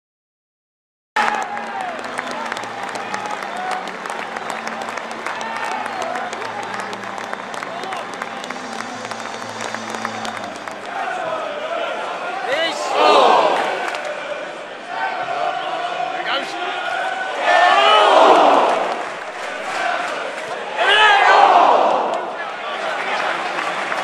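Football stadium crowd, many voices shouting and chanting together. It swells loudly three times in the second half: about 13, 18 and 21 seconds in.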